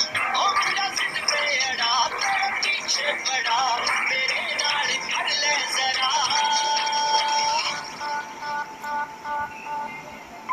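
A Hindi song plays with a singer's voice over backing music. About six seconds in, the singing gives way to a long held note, and the music gets quieter toward the end.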